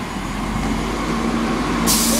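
Volvo Olympian double-decker bus engine running as the bus drives past, a steady hum that grows louder. A sudden loud hiss starts near the end.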